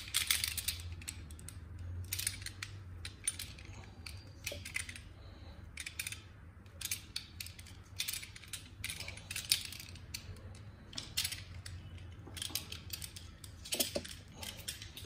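Irregular clicks and snips of a cutting tool working through the outer jacket of a WBT audio signal cable to lay bare its shield, with a low steady hum underneath.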